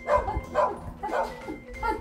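Shiba Inu barking: about four short barks in two seconds.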